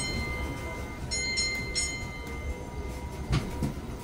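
Tourist road train's warning bell struck three times in quick succession about a second in, ringing on, over the steady low rumble of the train moving. A single knock near the end.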